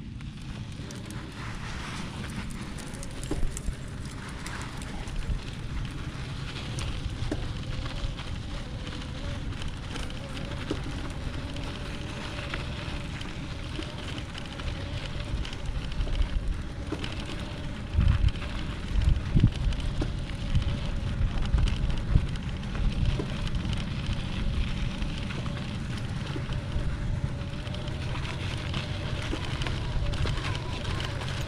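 Tongsheng TSDZ2 mid-drive e-bike motor pulling up a dirt climb with a thin steady whine, under wind rumble on the microphone and tyre crackle over loose gravel, with a few heavy bumps a little past halfway. The motor drives without skipping, its sprag clutch freshly replaced.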